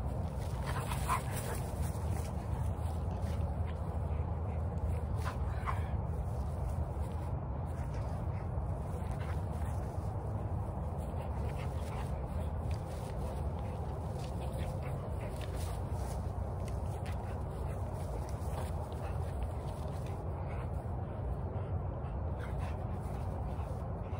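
An American Bully dog making small vocal sounds as it chases and tugs at a flirt pole lure, over a steady low rumble of wind on the microphone, with a few short sharper sounds early in the play.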